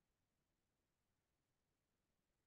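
Near silence: a pause in the lecture with nothing audible but a faint noise floor.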